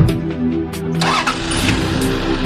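A car engine starting, with a burst of noise as it catches about a second in, under background music.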